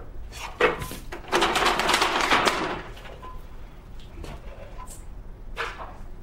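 Handling noises from an aluminium stepladder being climbed down and gripped: a couple of light knocks in the first second, then a scraping rustle for about a second and a half, then a few faint clicks.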